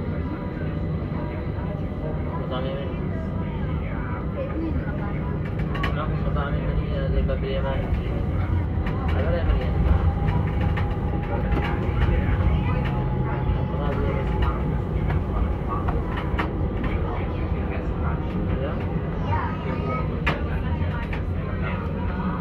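Busy city street ambience: a steady low rumble of traffic with the indistinct chatter of passers-by. A faint thin steady tone holds for a few seconds in the middle.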